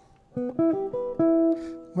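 Hollow-body archtop electric guitar picking a quick run of notes, about a dozen in under two seconds, starting about a third of a second in. It is a scale exercise combining thirds and sixths.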